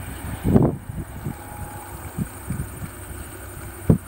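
Wind buffeting the microphone in irregular low gusts, loudest about half a second in and again just before the end.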